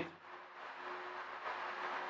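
Faint hiss, growing slightly louder toward the end.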